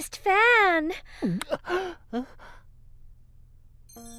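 A cartoon pig character's wordless, nervous vocal noises: a quavering whimper whose pitch wobbles up and down, then a swooping dip in pitch and a few short breathy sounds, all in the first half.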